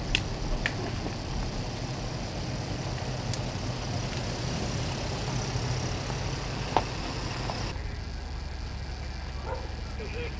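Vehicle engine idling steadily as a low hum, with a few sharp clicks, the loudest about seven seconds in.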